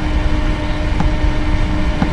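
Small 12 V computer cooling fan (Noctua NF-A8 PWM) running with a steady hum, over a louder low rumble, with one faint click about a second in.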